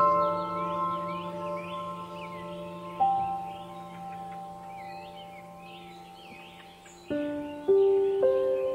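Slow meditative ambient music: soft struck bell-like notes ring out and fade over held tones, with new notes at the start, about three seconds in, and several more near the end. Birdsong chirps run quietly underneath.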